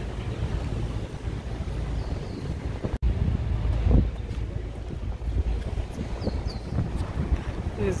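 Wind buffeting the microphone: a steady low rumble that swells about four seconds in, broken by a brief gap about three seconds in.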